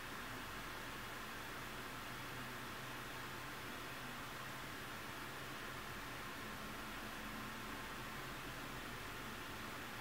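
Steady faint hiss of room tone and recording noise, with no distinct sounds standing out.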